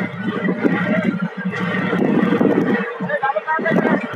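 Several men's voices calling and shouting over one another on a fishing boat's deck, with a steady machine hum underneath.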